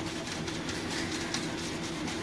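Nylon scouring pad scrubbing the enamel top of an electric stove around a burner, a soft run of rubbing strokes over a steady low hum.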